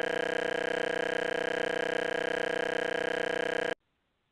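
A loud electronic buzz tone held at one steady pitch, rich in overtones, cutting off suddenly near the end: the cut-off sound as a caller is hung up on.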